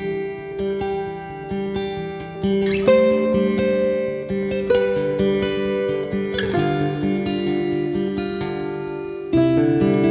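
Background music led by plucked guitar, with held notes and a fresh strike every couple of seconds.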